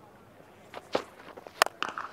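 A few soft footfalls, then a sharp crack of a cricket bat striking the ball about a second and a half in, followed by one more click.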